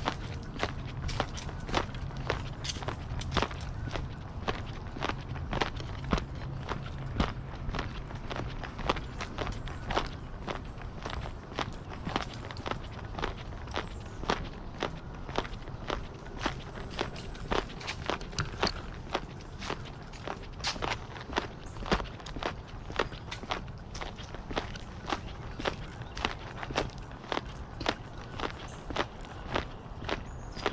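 Footsteps of a person walking steadily on a dirt path, about two steps a second, over a low steady rumble.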